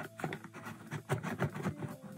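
A stiff, tight-fitting cardboard box lid being worked off by hand: irregular scraping and rubbing of card against card and fingers, with small ticks and crackles.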